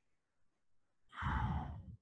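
A man's sigh: one breathy exhale close to the microphone, starting about a second in and lasting under a second, with a low rumble from the air hitting the mic.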